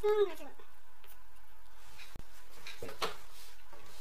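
A brief vocal sound from a person, falling in pitch, right at the start, followed by a few faint soft noises.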